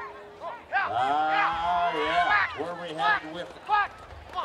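Voices whooping and hollering in long drawn-out calls from about a second in, overlapping for a second or two, then two short shouts near the end.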